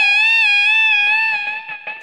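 Electric guitar (Fender Stratocaster) sounding a single high note at the 15th fret of the first string, bent up and held with a slight waver in pitch, dying away near the end.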